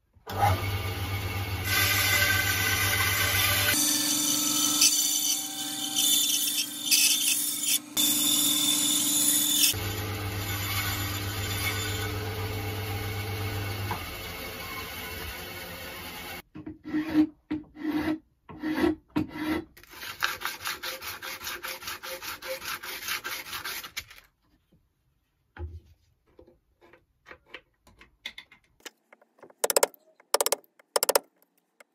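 A bandsaw starts suddenly and runs with a steady motor hum while cutting through a strip of wood. Later come evenly repeated hand strokes scraping across wood, then a few light scattered taps.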